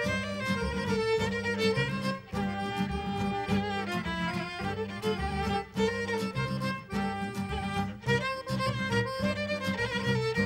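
Macedonian folk instrumental: violin playing the melody over piano accordion, strummed acoustic guitar and plucked double bass, with a steady dance beat in the bass.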